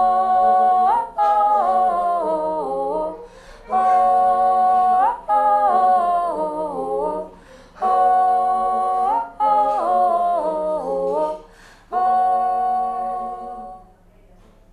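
A woman humming a wordless melody in repeated phrases, each a held note that falls away in steps, with short breaths between; the music stops near the end.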